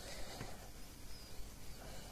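Faint handling noise of a phone circuit board being worked and lifted out of a metal PCB holder, with a few light ticks over a steady low hum.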